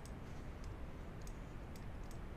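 A few faint, separate computer mouse clicks over a low, steady hum.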